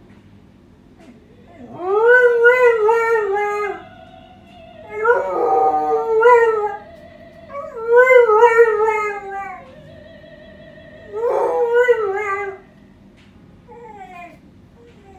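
Cocker spaniel howling along to music from a television: four long, wavering howls with pauses between them.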